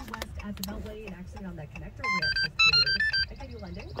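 Simple Key programmer playing its electronic confirmation tune: a quick run of beeps stepping between different pitches about two seconds in, then a fast high trill. The tune signals that the programming step for the key fob has gone through.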